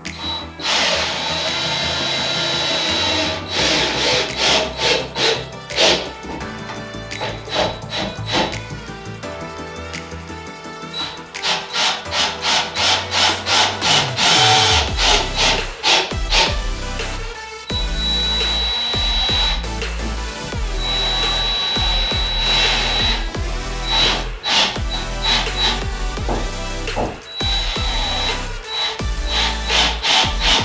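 Electric rotary sander with 220-grit paper running over epoxy-coated wood, mixed with background music that has a steady beat.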